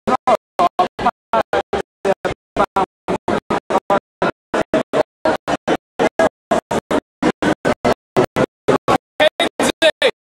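Live band music heard only in short chopped bursts, about four or five a second, with dead silence between them, the audio cutting in and out in a stutter.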